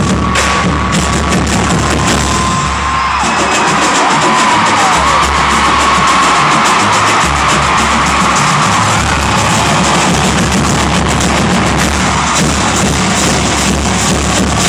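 Marching drumline with multi-tenor drums playing loudly over a deep, pulsing bass, with a large crowd cheering.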